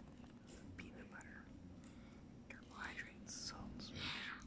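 A man whispering softly, too faint for the words to be made out, over a steady low hum.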